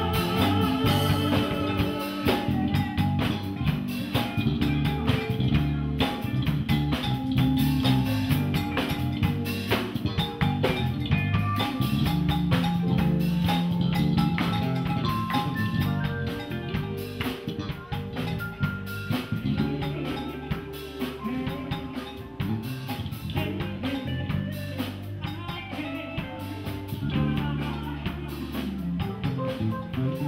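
Live soul-funk band playing: drum kit, bass, electric guitar and keyboards.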